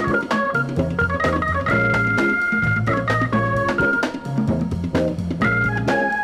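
Instrumental break of a funk 45 with no vocals: an organ plays a melody of held notes over a bass line and drums.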